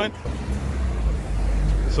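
Low rumble of street traffic, likely a passing car, building through a pause in the talk.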